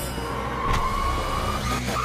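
Horror trailer soundtrack: a single high tone slowly rising in pitch over a low rumble, with a sharp hit under a second in.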